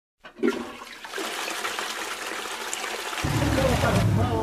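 A sudden, water-like rushing noise that starts about half a second in and runs on evenly. A deeper sound joins it near the end, with voices starting just after.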